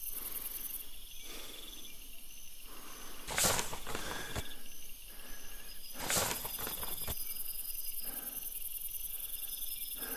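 Crickets chirping steadily in a quiet night-time ambience, a high repeating trill. Two brief rustling swishes come about three and a half and six seconds in.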